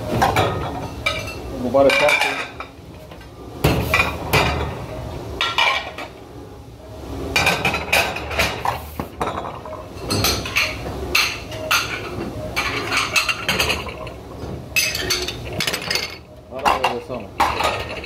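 Ceramic dinner plates being handled and stacked, clinking and clattering again and again throughout, over a steady low hum.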